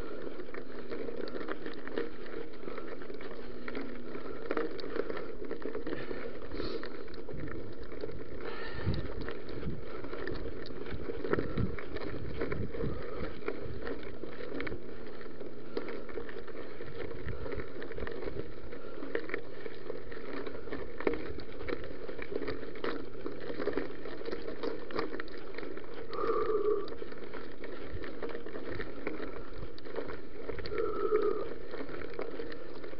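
Mountain bike rolling along a gravel trail: a steady crunching rumble of tyres on loose stones, with frequent small rattles and knocks from the bike over the rough ground.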